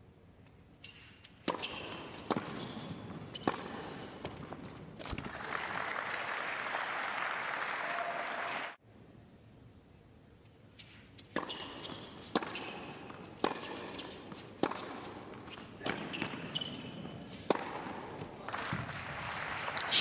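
Tennis rallies: a ball struck back and forth by rackets, sharp hits about once a second, in two points separated by a cut. At the end of the first point a burst of crowd applause swells up.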